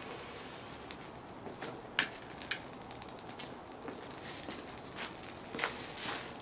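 Bouncy ball burning, crackling: a steady hiss with scattered, irregular sharp crackles and pops.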